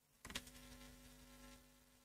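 Near silence: a couple of faint clicks about a third of a second in, then a faint steady buzzing hum that fades away.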